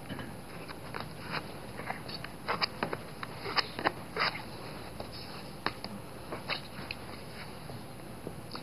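Hands handling and pressing paper and fabric onto glued cardboard over a cutting mat: irregular light rustles, scrapes and clicks, busiest in the middle.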